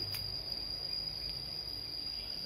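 Steady, high-pitched insect trill, like a cricket's, holding one unbroken tone.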